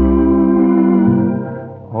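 Organ holding a sustained chord over deep bass notes in a slow waltz, between sung phrases, fading away near the end, played from a 1950 78 rpm shellac record.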